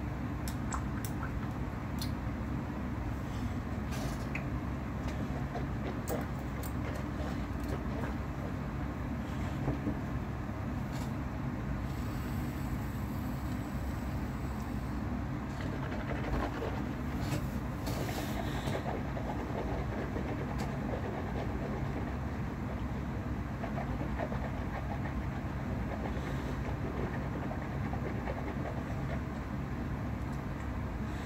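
Steady low rumble of background noise, with a few faint clicks scattered through it.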